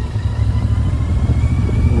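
Royal Enfield Interceptor 650's parallel-twin engine running while the bike rides along, a steady low rumble.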